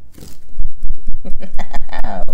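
Loud close-up handling noise right at the microphone: rumbling and knocking that starts about half a second in and keeps on, with a short vocal sound near the end.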